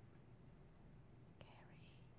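Near silence: room tone, with a faint click and a brief faint breathy sound near the end.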